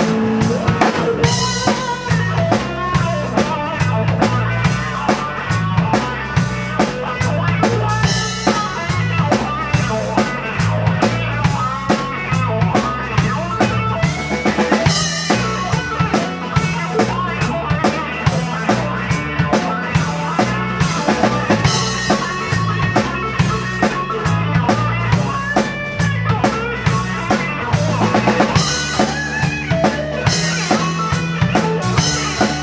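Live blues-rock band in an instrumental passage: electric guitar playing bending lead lines over electric bass and a drum kit keeping a steady beat.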